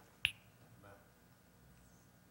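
A single sharp click about a quarter of a second in, followed by quiet room tone with a faint, brief murmur of a voice about a second in.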